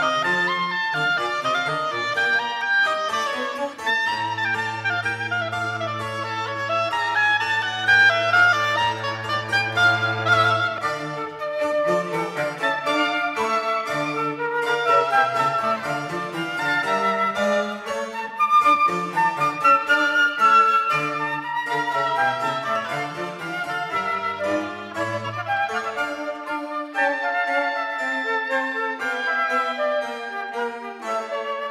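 Baroque chamber music: flute and violin playing over a basso continuo of cello and harpsichord, in a fast movement in G minor. A low bass note is held from about four to ten seconds in.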